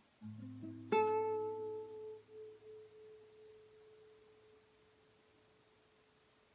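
Classical guitar playing the closing notes of a slow piece: a few soft low notes, then about a second in a bright plucked note that rings out and fades away over several seconds.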